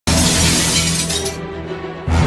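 Intro music with a glass-shattering sound effect. It starts suddenly with a bright crash that fades over about a second and a half, over low sustained bass notes.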